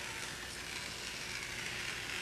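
Rotary cutter blade rolling through cloth on a plastic cutting mat, a faint, steady hiss as it cuts along a taped edge.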